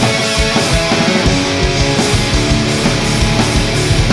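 Instrumental passage of an alternative rock song: electric guitars, bass, drums and keyboards. The drum and bass low end thins out briefly at the start, and the full band's beat comes back in about a second in.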